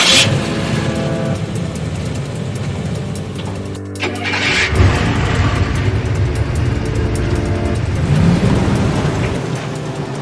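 Car engine sound effect in an animated intro: a deep engine rumble with revs, the pitch rising about eight seconds in. A sharp burst of noise opens it and another comes about four seconds in, all laid over intro music.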